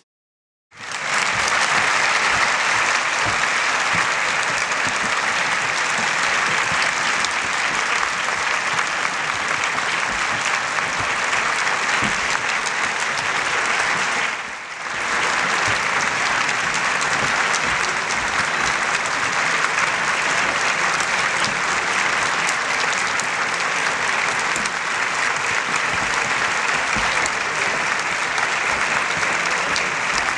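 Large audience applauding steadily in a concert hall. It starts abruptly after a moment of silence and dips briefly about halfway through.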